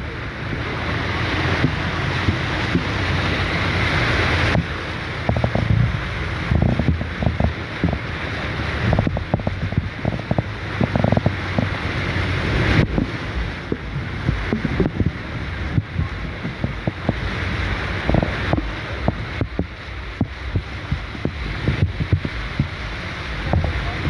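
A vehicle's tyres ploughing through deep floodwater: a loud, steady rush of water spray and splashing over a low rumble, with wind noise and irregular sharp splashes.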